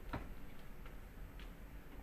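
Quiet room tone with a steady low hum and a few faint clicks, the clearest one shortly after the start.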